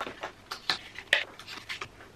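Washi tape rolls and sticker packs knocking against each other and a clear plastic storage box as they are handled and sorted: a handful of irregular light clicks and clacks, the sharpest about a second in.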